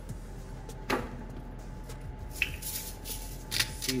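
Quiet handling sounds at a sheet pan: one sharp knock about a second in, then a run of small clicks and taps in the last second and a half, over a steady low hum.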